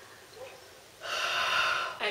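A woman's loud, breathy hiss forced out through bared teeth, about a second long and starting about a second in: a voiceless sound of exasperation and disgust.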